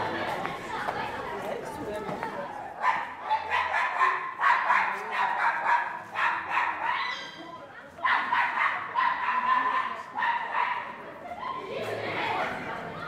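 A small dog barking repeatedly in two runs, starting about three seconds in and again about eight seconds in, over the chatter of people on the street.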